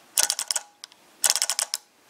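Microswitch lever clicking rapidly as the blades of a hand-spun microwave fan strike it, in two quick bursts about a second apart. The switch is set up to be tripped once per turn as the timing switch of a pulse motor.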